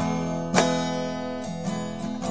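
Acoustic guitar strummed, with a chord struck hard about half a second in and left ringing.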